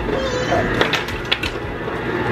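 Ice cubes dropping from a refrigerator door's ice dispenser into a plastic blender cup, several separate sharp hits.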